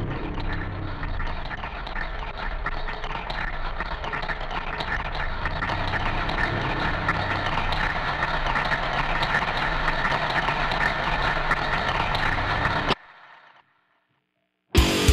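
Dense, noisy synthesized soundscape of rushing texture that slowly grows louder, then cuts off suddenly near the end.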